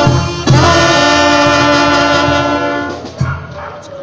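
Brass band of trombones, saxophones and trumpets playing. Just under half a second in, the band strikes a loud chord and holds it for about two and a half seconds. The chord cuts off about three seconds in, leaving a softer held note.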